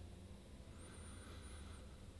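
Near silence: room tone with a low hum, and a faint high whistle-like tone that rises and falls once about a second in.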